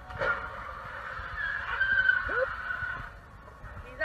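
A short crash as an SUV rams a car, then a long wavering tyre squeal as the SUV keeps shoving against it.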